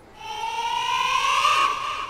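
A single long synthetic tone from the background score, gliding slowly upward in pitch and fading near the end: a sound-effect sting laid under the scene.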